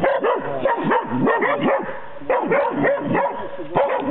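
Young hunting hounds barking in a rapid, continuous run, several barks a second, baying at a wild boar held at bay during training.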